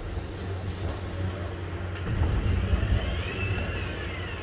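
Low, steady rumble of motor traffic on a city street, a little louder in the second half, with a faint whine that rises and then falls near the end.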